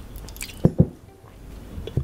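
Close-miked wet mouth sounds of swallowing a sip of cold brew coffee: two quick gulps a little over half a second in, then a smaller click near the end.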